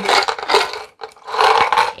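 Two bursts of scraping and rubbing, one at the start and one about a second in, as small glass mosaic squares are slid and set out on a towel-covered table.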